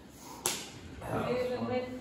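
A single sharp hand slap on a drum about half a second in, followed from about a second in by a voice holding long pitched tones.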